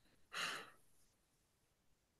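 A person's single short breath out, a sigh, about half a second in.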